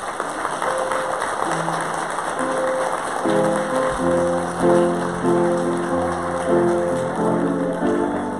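Congregation applauding after a baptism, the clapping fading over the first few seconds while piano music comes in beneath it. The piano plays slow, sustained chords that take over as the loudest sound about three seconds in.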